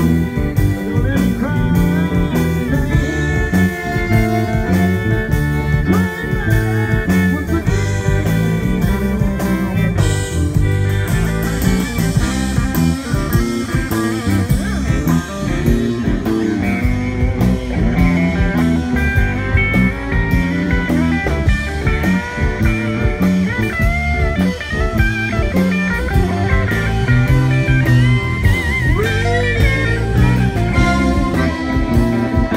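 Live Cajun band playing an instrumental passage: button accordion and electric guitar over drums and a steady beat.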